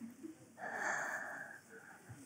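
A person's soft, breathy exhale close to the microphone, lasting about a second, starting about half a second in.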